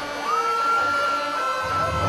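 Turntablist's battle routine played from vinyl on two turntables through a mixer: a single long held high note glides in about a quarter second in and holds steady, and the bass comes back in about one and a half seconds in.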